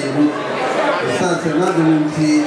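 A man speaking into a handheld microphone, his amplified voice carried through a large hall.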